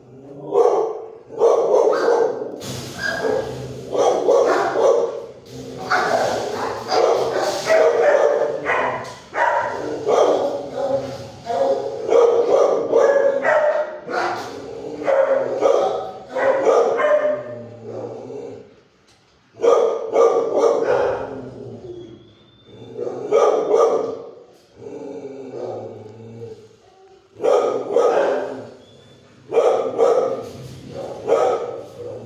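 Dogs barking in a shelter kennel block: runs of barks one after another, with brief lulls, the longest a little past halfway.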